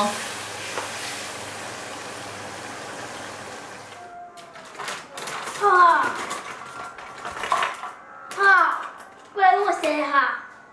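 Zhajiang sauce of diced pork, potato and tofu simmering in a wok with added water, a steady bubbling hiss that fades slightly over about four seconds. Then a few clicks and a girl talking.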